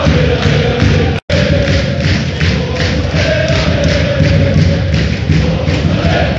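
Large football crowd of RC Lens supporters chanting in unison from the terraces, loud and sustained. The sound cuts out completely for an instant about a second in.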